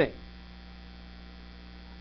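Steady electrical mains hum: a low, even drone made of several constant tones, with the last syllable of a man's word fading out at the very start.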